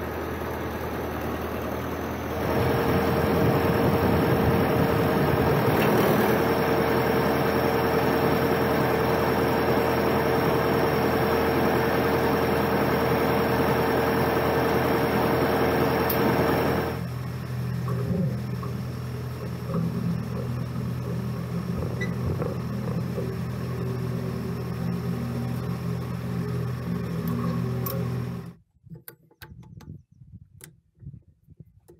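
John Deere tractor's diesel engine running steadily. A few seconds in it gets louder with a steady whine, then settles back to a lower run about halfway through. The sound cuts off suddenly near the end.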